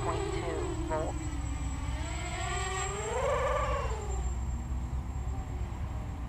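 Quadcopter's brushless motors and propellers whining as the throttle changes: the pitch sags, climbs to a peak about three to four seconds in, then drops again. The quad runs on a 4S battery with a very high thrust-to-weight ratio, so it hovers at low throttle and its motor pitch swings widely with small stick movements.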